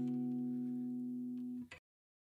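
Final guitar chord of a song ringing out and slowly fading, then cut off abruptly near the end, leaving silence.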